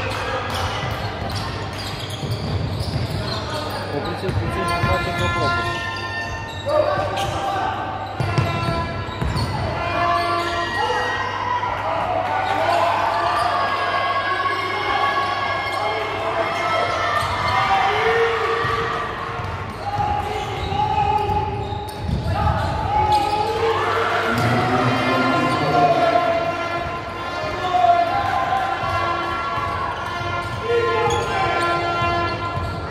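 Basketball game in a large echoing gym: the ball is bounced on the hardwood court again and again, with players' and spectators' voices calling out throughout.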